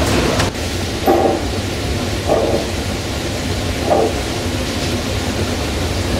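Kjeldahl steam-distillation unit running, a steady low rumble with three short gurgles as the ammonia is distilled into the boric acid receiver.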